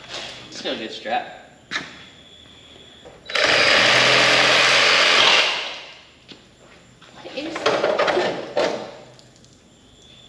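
A power tool runs in one loud, steady burst of about two seconds, starting a little over three seconds in and then dying away.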